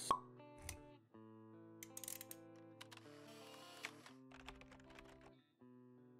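Quiet intro-sting music of held notes, with pop and click sound effects. The loudest is a sharp pop at the very start, with a few lighter clicks after it.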